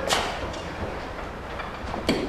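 Two sharp knocks or hits, one at the start and one about two seconds later, each trailing off in a fading echo, over a low steady rumble.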